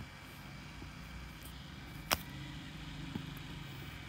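Low, steady background hum with one sharp click about two seconds in and a fainter tick a second later.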